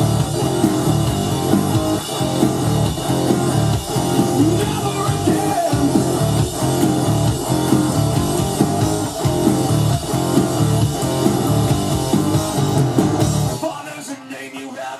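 Gibson electric guitar played along to a rock backing track with drums and bass. The bass and low end cut out suddenly just before the end.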